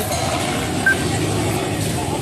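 A vehicle engine idling steadily, with a short high beep about a second in.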